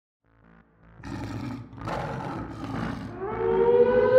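A monster roar sound effect with rough, noisy swells, laid over eerie intro music; near the end a sustained tone slides up and holds steady.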